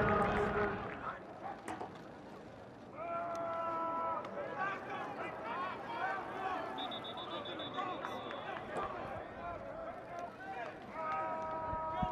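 Football practice field ambience: voices of players and coaches calling out across the field, with a high steady tone lasting about two seconds midway.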